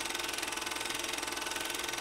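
Film-projector sound effect: a steady, rapid mechanical clatter of about a dozen ticks a second over hiss.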